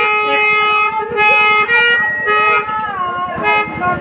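Live nautanki folk band playing an instrumental passage: a reedy melody on long held notes, with a few downward slides, over steady hand-drum playing.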